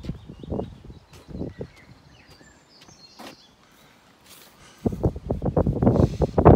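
Quiet outdoor background with a few small bird chirps. About five seconds in, a loud, gusty wind rumble on the microphone sets in.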